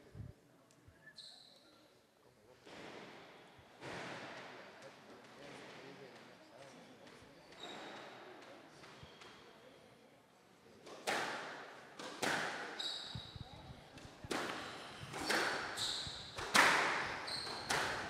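Squash rally in a hall: sharp strikes of racket on ball and ball on wall, about one a second and growing louder from about eleven seconds in, with rubber-soled shoes squeaking on the wooden court floor. Before the rally there is only a low murmur and the odd shoe squeak.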